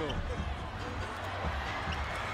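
A basketball being dribbled on a hardwood court over arena crowd noise, heard through a game broadcast.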